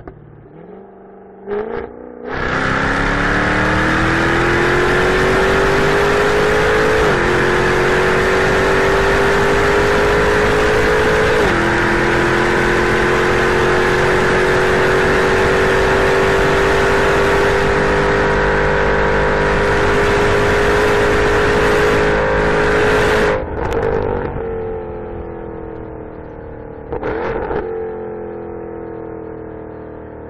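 Jaguar F-Type's supercharged 5.0-litre V8 accelerating hard, heard from inside the cabin. The engine note climbs and dips twice as the gearbox shifts up, then holds high. Near three-quarters of the way through it drops off abruptly as the throttle is lifted, and the pitch falls as the car slows.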